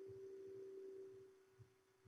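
Near silence with a faint, steady single-pitched hum that fades out a little over a second in.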